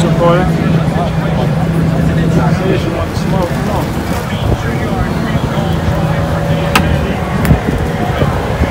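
Background voices over a steady low hum, with one sharp click about seven seconds in.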